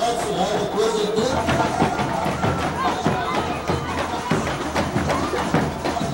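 Carnival samba percussion playing a steady, busy beat, with voices over it.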